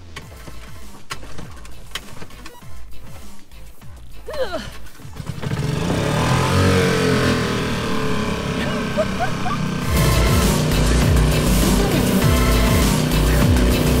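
Small outboard motor on an inflatable dinghy starting up about five seconds in and running. About ten seconds in it grows much louder and deeper as the throttle opens and the dinghy speeds up, with water rushing by.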